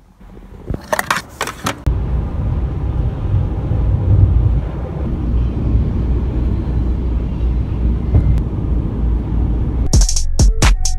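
Steady low road and engine rumble inside a van cruising at highway speed, starting abruptly about two seconds in. Just before it come a few brief sharp knocks.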